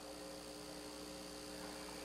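Faint steady electrical hum with a light hiss, from the handheld microphone's sound system.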